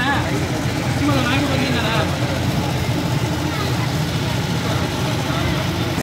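Street market ambience: a steady low rumble with people's voices talking now and then in the background.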